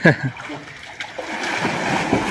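A person clears their throat about half a second in, then water splashes as a swimmer strokes through a pool, the splashing getting louder in the second half.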